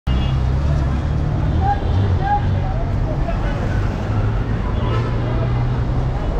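Hyundai coach's diesel engine idling with a steady low hum, among street traffic noise.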